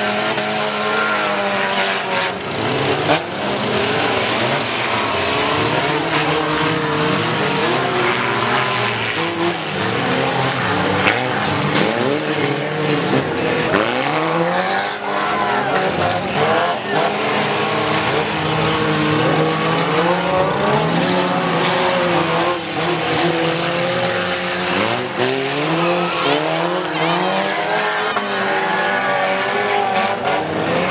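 Several demolition-derby cars' engines revving up and down at once on a dirt arena, overlapping and never letting up, with a few sharp bangs among them.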